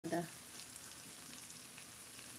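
Diced potatoes frying in oil in a frying pan: a steady, faint sizzle with small scattered crackles.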